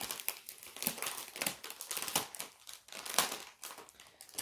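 Cross-stitch kit packaging crinkling as it is handled, in a run of irregular crackles with the loudest a little after three seconds in.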